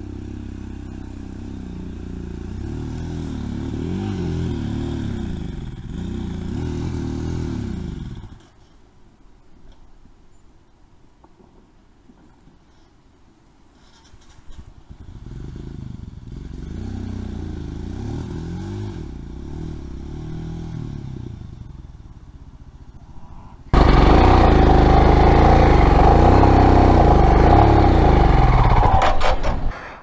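Off-road motorcycle engine labouring up a steep dirt climb, its revs rising and falling, dropping away about eight seconds in and picking up again around fourteen seconds. Over the last six seconds it is much louder, held at high revs, which the rider takes for a failing clutch.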